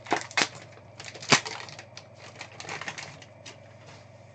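Foil card-pack wrapper crinkling and rigid plastic card holders clicking as the cards are pulled out of the opened pack, with a sharp click about a third of the way in and smaller crackles near the end.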